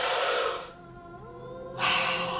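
Soft background music with held, sustained notes, overlaid by a breathy hiss that fades out in the first second and another that starts near the end.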